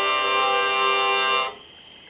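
Aquitaine-model hurdy-gurdy sounding a steady held note as the cranked wheel turns against the strings; it cuts off about a second and a half in.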